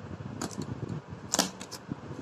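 Glossy slime being squeezed by hand and pressed into a plastic cup, giving a few sharp clicks and pops over soft handling noise; the loudest pop comes a little under a second and a half in.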